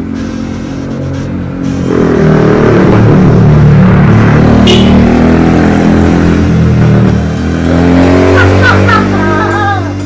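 A motor vehicle engine passing close by: its sound swells in about two seconds in, stays loud with its pitch bending up and down, and fades out toward the end.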